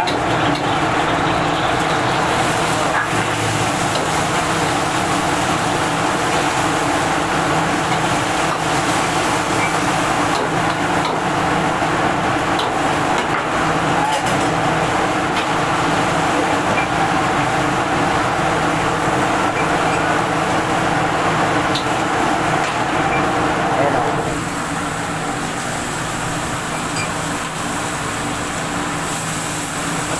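Steady roar of a commercial kitchen's gas wok burners and range exhaust, with a constant hum. About 24 seconds in it gets a little quieter and a brighter hiss comes in.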